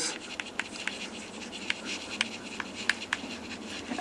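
Chalk writing a word on a blackboard: a run of quick, irregular taps and short scratches.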